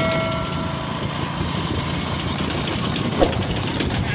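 Motorbike engine running steadily with wind rush as it rides along a road. A bell-like chime rings out at the start and fades within the first second.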